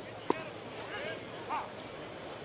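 A baseball pitch popping once into the catcher's mitt about a third of a second after release, a single sharp smack. Behind it a small ballpark crowd murmurs, with a few scattered calls.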